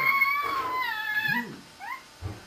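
Baby's long high-pitched squeal, held level for over a second and then sliding down in pitch as it fades, followed near the end by a short rising squeak.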